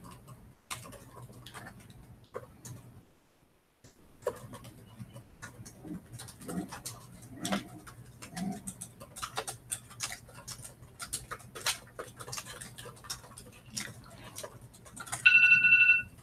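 Laptop keyboards being typed on: irregular soft key clicks, pausing briefly about three seconds in. Near the end a phone timer starts beeping loudly with a steady tone, marking the end of the timed writing sprint.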